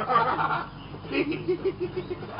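A person laughing: a short burst at the start, then a quick run of low, pulsed chuckles about a second in, over a steady low hum.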